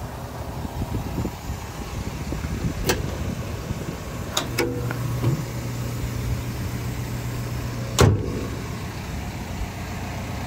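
The push-button latch on a Cat 320 excavator's DEF-tank side access door clicks as it is pressed and pops free. The sheet-metal door then swings open and bangs hard against its stop about eight seconds in, over a steady low hum.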